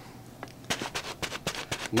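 Handling noise: a quick run of small clicks and knocks, about eight a second, starting a little under a second in, as a hand works in under the wheelchair cushion and the camera moves.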